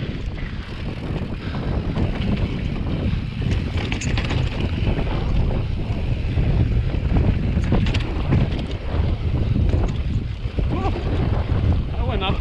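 Wind buffeting the camera microphone over a steady low rumble of mountain bike tyres rolling across sandstone slickrock. Sharp knocks and rattles from the bike come over bumps, notably about four and eight seconds in.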